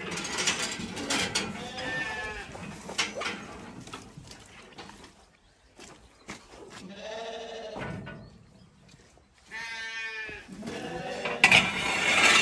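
Zwartbles lambs bleating several times, the strongest and longest call near the end, with metal pen gates clanking and rattling as they are opened.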